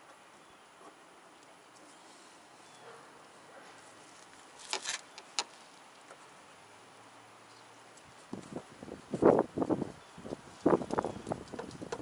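A thin sheet-metal tool knocking and clattering against the hood at the base of the Corvette's windshield as it is worked to free a stuck hood latch. Two light clicks come about halfway through, then a quick run of irregular knocks near the end.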